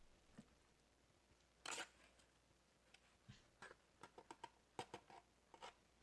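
Faint handling of a plastic scoop and a baking soda box while scooping baking soda into a plastic container of water: a brief rustle a little under two seconds in, then a run of light clicks and taps.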